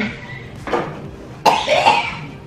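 A man coughing a few times, the loudest cough near the end, after sipping spirit vinegar through a straw.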